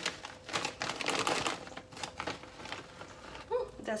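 Plastic packet of dried anchovies crinkling and rustling as it is handled and the fish are picked out of it, in irregular bursts that die down after about two and a half seconds.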